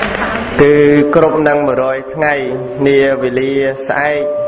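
A man's voice chanting a Buddhist chant, holding long notes on a nearly level pitch in two phrases with a short break about halfway.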